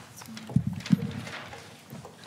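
A few hollow knocks and handling noises from objects being moved about on a meeting table close to a microphone; the two loudest knocks fall about half a second and one second in.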